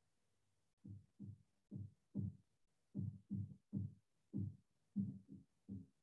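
A series of about a dozen low, muffled thumps, roughly two a second, starting about a second in.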